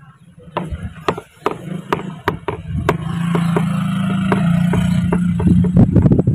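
A string of sharp clicks and knocks, irregular, a few a second. About three seconds in, a steady low drone builds and holds beneath them.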